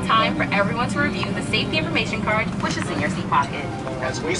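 Voices talking over the steady low hum of an airliner cabin waiting to take off.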